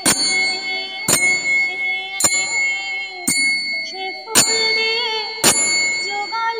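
A metal bell or gong struck in a steady beat about once a second, each strike ringing on. Under it runs a sustained melody whose pitches slide, heard most clearly in the second half.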